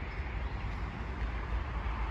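Steady traffic noise from a nearby busy road: a low, even rumble with a hiss over it.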